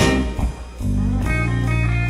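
Blues band playing live, electric guitar leading over bass and drums in an instrumental passage. The band drops out briefly about half a second in, then comes back with held notes.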